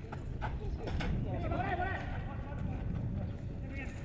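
Live football play on a dirt pitch: players' voices calling out across the field, with a few sharp knocks from the ball being kicked and running footsteps on the dirt.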